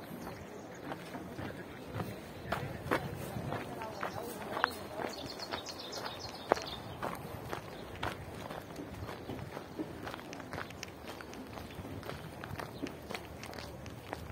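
Footsteps of walkers on a dirt path, a short crunching step about twice a second.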